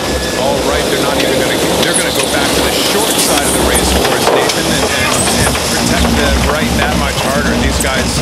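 Loud rushing wind and water noise from an AC75 foiling monohull racing at speed, with crew voices calling over it. A steady hum runs through the first couple of seconds.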